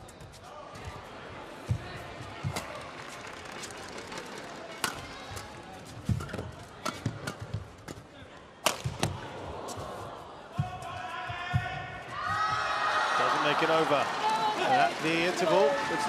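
Badminton rally: sharp racket strikes on the shuttlecock and thuds of the players' footwork on the court, at irregular intervals. About twelve seconds in, the crowd breaks into loud cheering and shouting as the point ends.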